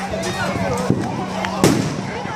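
Firecrackers going off in a burning fireworks warehouse: two sharp bangs, about a second in and near the end, the second louder, over people's voices.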